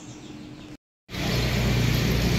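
Quiet indoor room tone with a faint steady hum, broken by a short dead gap about three-quarters of a second in; then a much louder steady outdoor background with a low rumble of street traffic.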